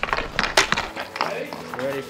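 Ice hockey skates cutting the ice and a stick working the puck: a few sharp scrapes and clacks in the first second, then voices beginning to shout near the end.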